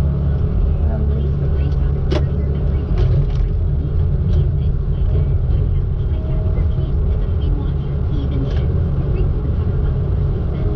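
Diesel engine of a knuckleboom log loader running steadily as the boom and grapple work, heard from inside the cab. A sharp knock comes about two seconds in, with a few lighter clanks later.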